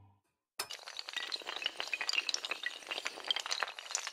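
Sound effect of many small glassy pieces clinking and clattering, like shattering glass, starting about half a second in after the last of a music note dies away.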